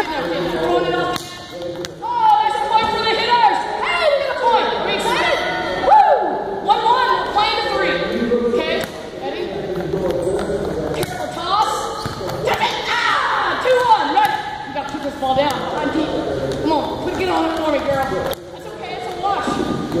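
Several young players' voices talking and laughing over one another, echoing in a large hall, with a few thuds of a volleyball being played.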